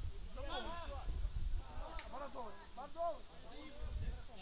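Distant shouts and calls of players on a football pitch, over a steady low rumble, with one sharp click about halfway through.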